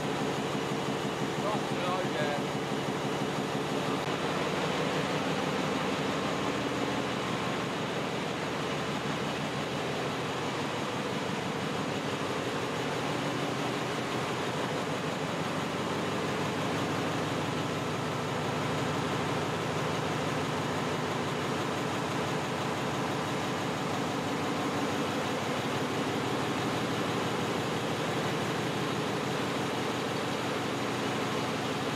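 Engine-room din of one of the ship's MAN V20 diesel generator engines running steadily under part load, a dense, even drone with a fast firing rhythm and a ventilation hum.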